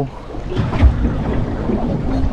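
Wind rumbling on the microphone over the wash of the sea against a small boat's hull, with a low bump just under a second in.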